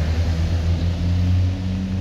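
Steady low drone of an engine running at a constant idle, with a low hum and a steady tone above it.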